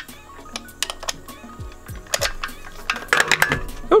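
Light metallic clicks and clinks of a socket extension and ratchet being turned by hand to screw a spark plug into the cylinder head. A louder clatter comes about three seconds in as a phone is dropped.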